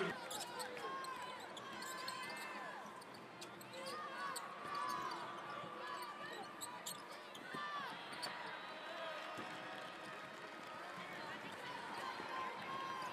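Live basketball game on a hardwood court: the ball bouncing and sneakers squeaking in short chirps, over indistinct voices in a large arena.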